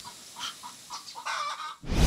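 Chickens clucking, a few short clucks spread across the moment.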